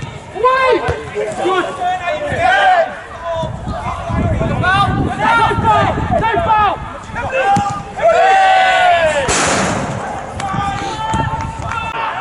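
Footballers shouting short calls to each other on the pitch during open play, with one long, loud shout about eight seconds in. Just after nine seconds there is a brief burst of noise.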